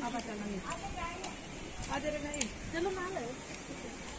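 Indistinct voices of people talking, quieter than the nearby talk, with a few light clicks.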